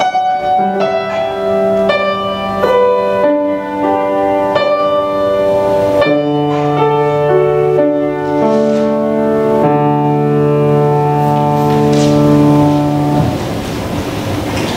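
Slow instrumental music on a keyboard instrument: held chords with a low bass note, changing every second or two, stopping shortly before the end.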